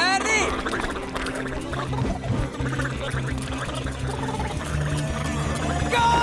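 A man's long, drawn-out shout that starts the snail race, over background music.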